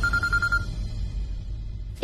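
Mobile phone ringing with a rapid trilling electronic ring tone that cuts off just over half a second in, leaving a low steady rumble.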